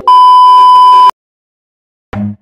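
Loud, steady test-tone beep of the kind played with TV colour bars, lasting about a second and cutting off abruptly.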